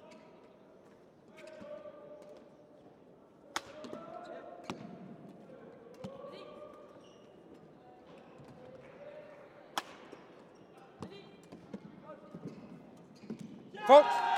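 Badminton rackets striking a shuttlecock in a fast doubles rally: sharp, irregularly spaced hits, coming quicker near the end, over a faint murmur of voices in the hall.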